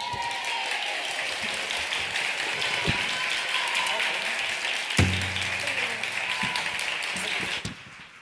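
Audience applauding steadily, dying away near the end, with a couple of low thumps along the way.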